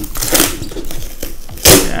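Clear plastic wrap around a plastic storage box crinkling and rustling as the box is handled and tipped up, with a louder, sharper crackle near the end.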